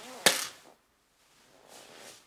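A small plastic pill bottle set down on a glass tabletop: one sharp knock with a brief ring, about a quarter second in.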